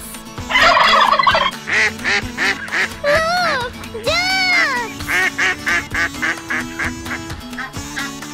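Farm poultry calls over children's background music: a turkey's gobbling burst about half a second in, then two long rising-and-falling honks, then a run of quick, short duck-like calls.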